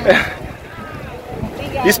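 Wind buffeting the microphone at the water's edge, a low rumbling noise, with a brief louder gust right at the start; voices are faint underneath.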